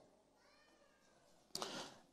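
Near silence, with a faint high wavering sound in the first second and a short breath-like noise near the end.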